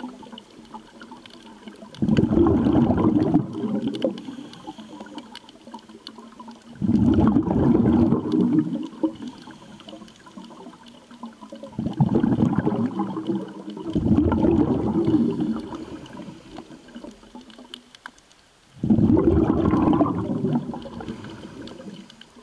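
Scuba regulator exhaust bubbles gurgling underwater in five bursts of two to three seconds each, one with each exhaled breath, with quieter gaps between.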